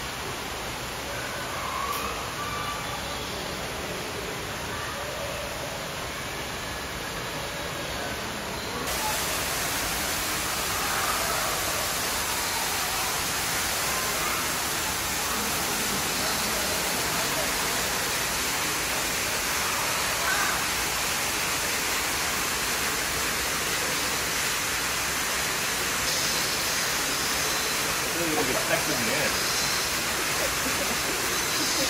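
A steady rushing noise, like running water, with faint indistinct voices under it. It grows louder and brighter about nine seconds in.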